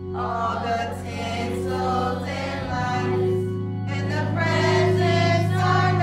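A choir singing over sustained low instrumental chords, the bass notes shifting a little under halfway through.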